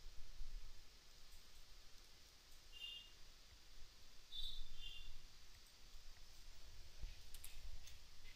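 A few faint computer mouse clicks against quiet room noise.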